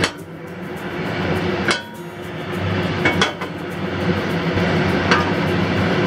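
Cast iron skillet knocking against the gas stove's metal grate a few times as the oiled pan is tilted and set back down, over a steady background hum and hiss.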